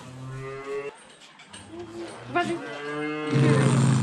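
Cattle mooing: several long calls, some overlapping, the loudest starting about three seconds in.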